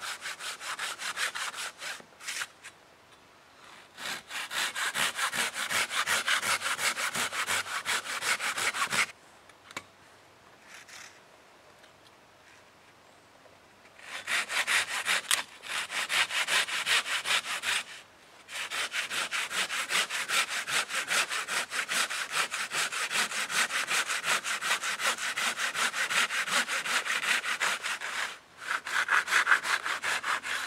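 Hand saw cutting into the trunk of a standing tree: rapid back-and-forth rasping strokes through the wood. The strokes come in runs of several seconds, with short breaks and a pause of about five seconds in the middle.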